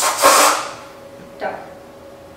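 Air hissing out of the neck of an inflated rubber balloon as excess air is let out to shrink it to size; the hiss stops about half a second in.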